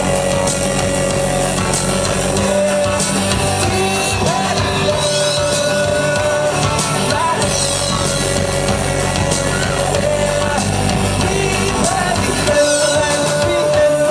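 Indie rock band playing live and loud through a club PA, with electric guitar and a sung vocal line over a steady full-band texture.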